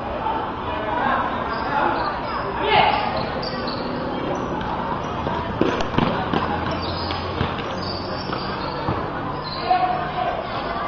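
A basketball bouncing on a concrete court during play, with several sharp bounces in the second half, over players' and onlookers' voices and shouts.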